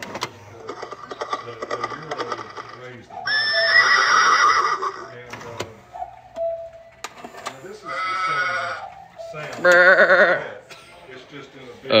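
Novelty cuckoo clocks playing recorded animal calls: three loud, warbling calls a few seconds apart, among them a horse's whinny from a clock whose horse figure has popped out. Quieter chatter runs underneath.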